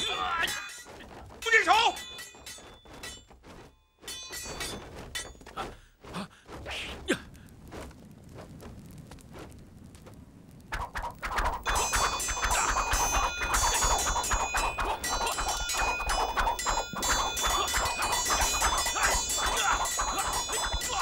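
Fight sound effects: hits and thuds, with a short shout in the first couple of seconds, then sparser knocks. About halfway through, loud dense music comes in suddenly and carries on under the fight.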